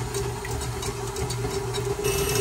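KitchenAid stand mixer running steadily, its wire whip beating raw eggs in the stainless steel bowl, with a constant motor hum.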